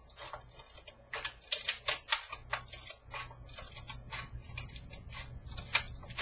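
Scissors snipping the thin aluminium of a cut-open soda can: a quick, irregular run of sharp snips, about three or four a second, trimming off jagged edges.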